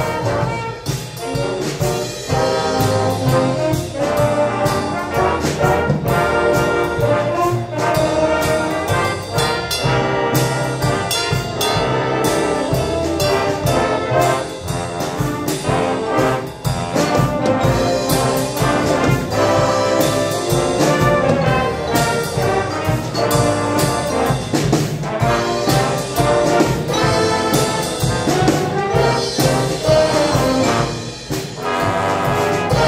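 A school jazz band playing a swing tune: trumpets, trombones and saxophones over a drum kit keeping a steady beat.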